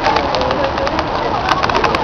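Open-air ambience of wind on the microphone and people talking, with a low cooing bird call in the first second and a quick run of sharp clicks in the last half second.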